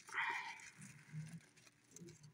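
Faint human breath and vocal sounds: a soft breathy exhale or whisper just after the start, then a quiet low murmur.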